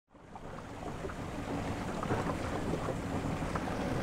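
Outboard motor of a small open boat running at low speed, with water and wind noise on the microphone, fading in from silence over the first second or two.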